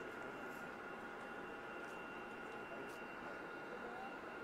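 Steady machine hum with an even high whine over a hiss of background noise, and a few faint ticks.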